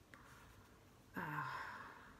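Speech only: a woman's faint breath, then a drawn-out hesitant "uh" about a second in.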